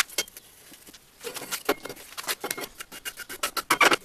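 Small metallic clicks and rattles from the steel rollers and gears of a homemade ring roller as it is handled: one sharp click at the start, then a dense run of light knocks from about a second in, loudest near the end.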